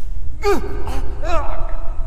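Industrial noise track of synthesizer-treated human vocal sounds over a steady low rumble. A sharp gasp sweeps downward in pitch about half a second in, followed by a wavering, held moan through the middle.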